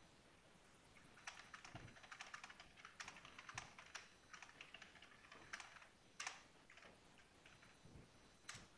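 Faint typing on a computer keyboard: quick, irregular key clicks that start about a second in.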